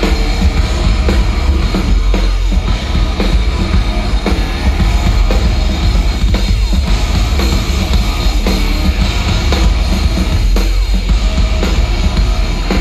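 Rock band playing live at full volume: heavy drums and electric guitar in an instrumental stretch without vocals, heard from the crowd with a heavy, booming low end.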